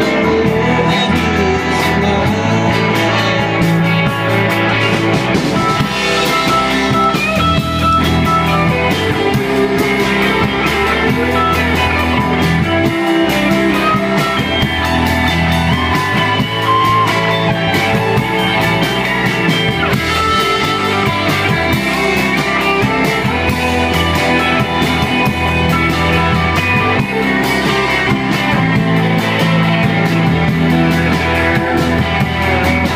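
Loud, continuous guitar-led rock music played live.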